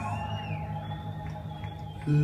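Hammond-style drawbar organ holding soft, sustained low chords in a quiet passage, with a thin high tone that rises and falls back near the start.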